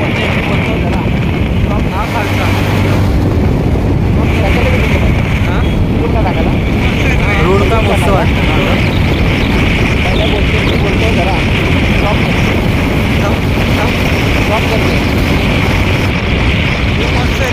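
Heavy wind buffeting on the microphone over the engine and road noise of a two-wheeler travelling at highway speed.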